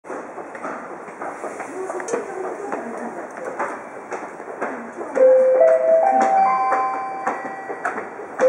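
Railway platform approach chime: clear tones stepping upward, four notes rising from about five seconds in, the signal that an arrival announcement is about to follow. Before it, platform background noise with scattered clicks and faint voices.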